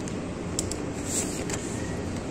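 Steady hum of egg incubators running, with a few faint light clicks from a plastic bag of hatching eggs being handled.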